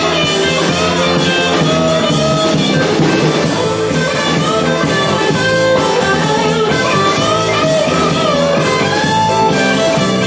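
A small band playing live blues-rock: a lead electric guitar line with bent notes over a second guitar and a drum kit keeping a steady beat.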